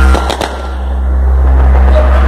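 Hip hop played loudly through the car sound system of a Volkswagen Saveiro G5 Cross pickup, with deep steady bass. A few sharp hits sound about a third of a second in, then the music dips briefly and builds back up.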